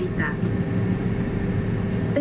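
Steady low rumble with a constant hum inside the passenger cabin of an Airbus A321-200 during pushback. The tail of a cabin PA announcement is heard at the very start.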